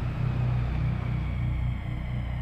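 A low, steady rumbling drone with no speech over it.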